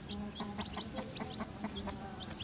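A brood of chicks peeping in many quick, high cheeps, while a hen clucks low among them.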